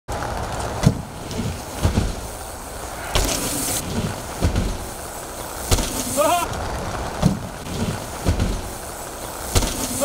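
Mountain bike riding over wooden ramps and jumps: a steady rush of tyres rolling and wind, with a sharp thud about once a second from the bike hitting and landing on the plywood. A short rising whoop from a voice about six seconds in.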